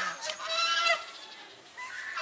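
Domestic geese honking: a drawn-out call in the first second, and another beginning near the end.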